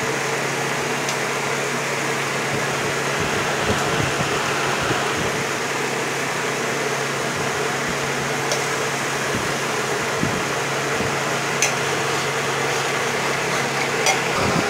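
Electric fan running steadily, a loud even whooshing noise with a faint hum in it that fills the room.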